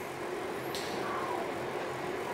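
Steady low room noise with a faint hum and no distinct event.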